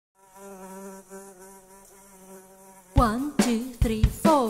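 Buzzing of a flying insect, a steady drone with a faint hiss above it, lasting nearly three seconds. It cuts off as music starts with heavy drum hits and a sliding pitched sound.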